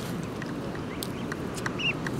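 Canada goose goslings peeping: a few short, high calls, the clearest one near the end.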